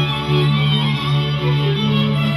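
Several layered violin parts, all recorded on one violin by multitracking: a steady low drone with short repeated notes above it.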